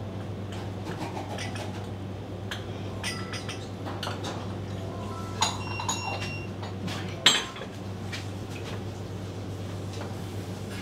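Light clicks and clinks of ceramic tableware as sushi is made and plated, with two sharp, ringing clinks about five and a half and seven seconds in, the second the loudest, over a steady low hum.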